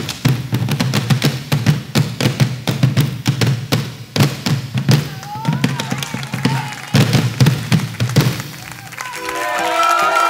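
A group of bombos legüeros, large wooden Argentine folk drums with leather heads and rope tensioning, played together in a fast, dense beat with a deep boom. The drumming dies away shortly before the end, and a violin melody comes in.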